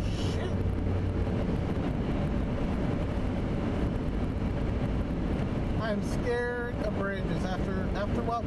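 Steady road noise of a car driving on a wet highway, tyre and engine rumble heard from inside the cabin. A voice comes in briefly about six seconds in.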